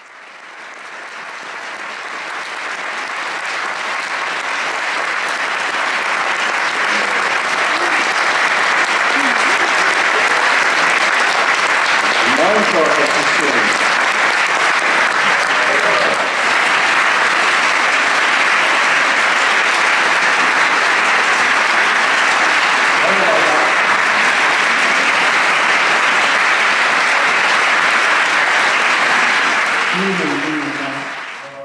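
Audience applauding steadily, swelling over the first few seconds and then holding, with a few voices faintly heard within it.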